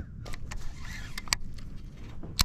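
Several light clicks and rattles of a fishing rod and reel being handled and set down in a plastic kayak, the sharpest click a little over a second in, over a low rumble.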